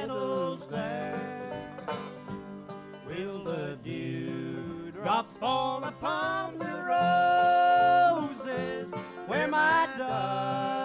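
Bluegrass five-string banjo and acoustic guitar playing a slow song with singing. A long held note about seven seconds in is the loudest part.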